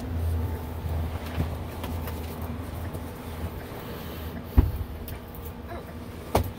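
Tour van engine and road rumble heard from inside the cabin, a steady low drone with one sharp knock about halfway through.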